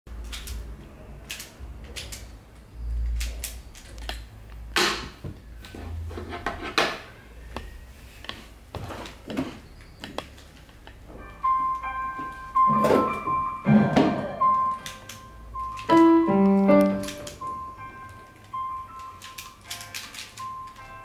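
Irregular plastic clicks and knocks of a Pyraminx pyramid puzzle being turned quickly by hand, with a keyboard melody joining about halfway through.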